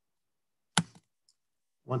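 Dead silence on a video-call audio feed, broken about three-quarters of a second in by a single sharp click that runs straight into a brief spoken "I".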